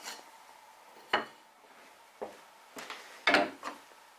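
Light wooden knocks and clatter from small workpieces and a bench hook being handled and set down on a wooden workbench: a sharp knock about a second in, another about two seconds in, and a short cluster near the end.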